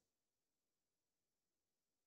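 Near silence: digital silence, as during a muted microphone in a web-meeting recording.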